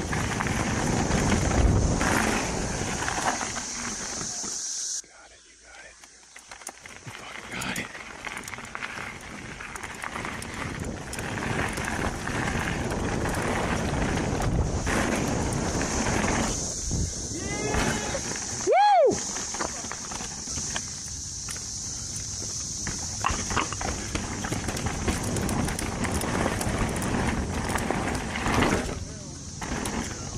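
2022 YT Capra downhill mountain bike ridden fast over dirt and rock: continuous tyre and rattle noise with a steady high hiss. About five seconds in the sound drops away abruptly for a couple of seconds, then builds back. Just before twenty seconds in comes a brief, loud pitched tone that rises and falls.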